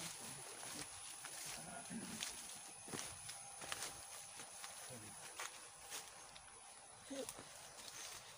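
Faint footsteps of people walking through leafy ground cover, soft irregular steps and rustles of plants.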